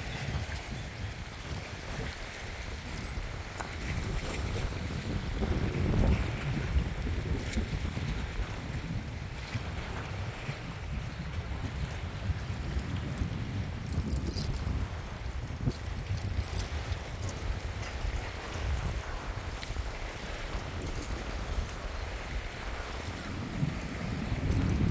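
Wind buffeting the microphone in steady gusts, with choppy water lapping around the pier.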